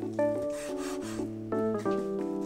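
A chef's knife slicing through boiled pork shank and onto a wooden cutting board, with a rasping cut about half a second in and a fainter one near the end, over background music.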